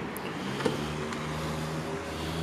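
Steady low hum of an idling car engine, with a light click about half a second in.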